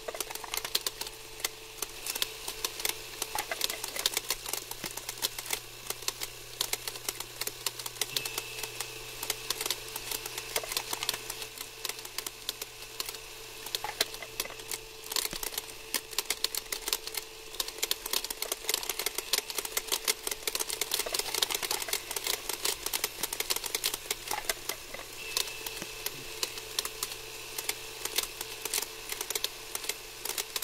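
Playback noise of a worn old film print: dense, irregular clicking and crackle over a steady low hum, with a faint higher whine that comes and goes.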